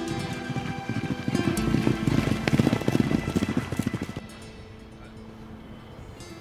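Background guitar music with the rapid hoofbeats of two racehorses galloping past on turf, loudest from about a second and a half in to about four seconds in, then fading out.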